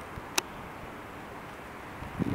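Faint, steady low background noise of an open-air night scene, with a single short sharp click about half a second in.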